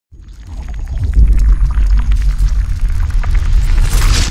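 Sound effect for an animated logo reveal: a deep rumble that swells in over the first second, scattered with many small clicks like liquid splashing, building to a bright rush near the end.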